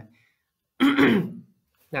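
A man clears his throat once: one short, loud burst about a second in.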